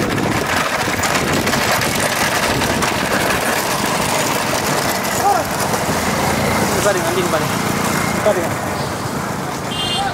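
Motorcycle engines running along a road under a steady noisy rush, with men's shouts and calls rising over it now and then.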